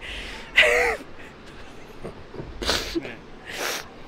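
A woman laughing: a breathy burst, then a short voiced laugh falling in pitch about half a second in, followed by two brief breathy laughs near the end.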